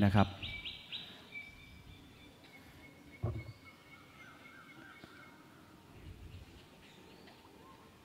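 Birds calling faintly in the trees: quick high repeated chirps, then a few held and wavering notes. There is one short low sound a little over three seconds in.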